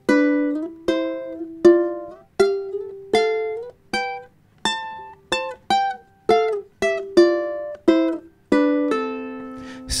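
Ukulele playing the C major scale harmonized in sixths, plucked two-note chords about two a second, climbing the neck and coming back down, the last one left ringing near the end.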